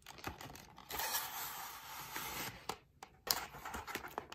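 Phone-case packaging being handled and opened: a clear plastic tray sliding and scraping out of a cardboard box, with a stretch of rustling scraping in the middle and a few sharp clicks.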